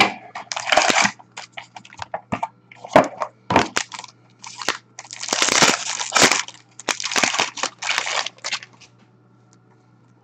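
A sealed box of Upper Deck Engrained hockey cards being opened by hand: packaging crackling and tearing in several bursts, with sharp clicks in between. It stops about a second before the end.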